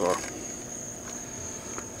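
Crickets trilling: a steady, unbroken high-pitched trill in the background.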